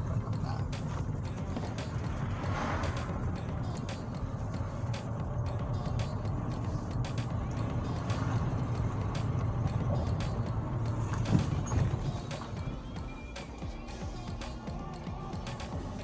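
Car driving, heard from inside the cabin: a steady low engine and road drone with frequent small clicks and knocks, the loudest about eleven seconds in. Music plays over it.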